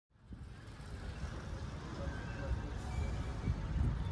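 City street ambience: a steady rumble of road traffic with faint voices of passers-by, fading in from silence at the start.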